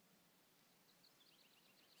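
Near silence, with a faint high bird trill: a rapid run of about ten short notes, starting about a second in and lasting just under a second.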